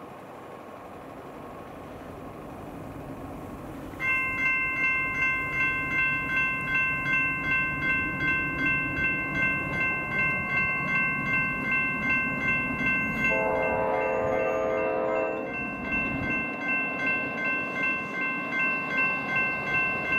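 GS Type 2 electronic crossing bells start ringing suddenly about four seconds in, a steady ding at about two strikes a second: the crossing has activated for an approaching train. A train horn sounds for about two seconds partway through.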